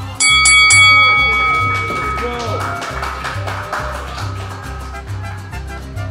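A boxing ring bell struck three times in quick succession, its ring fading away over the next few seconds: the signal to start the fight. Background music with a steady bass line plays underneath.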